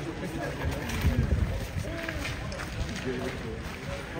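Indistinct chatter of several passers-by's voices, with a burst of low rumble about a second in.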